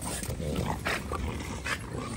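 French bulldogs and a micro bully playing and chasing each other, with short, scattered dog noises and a couple of sharp ticks about a second in and near the end.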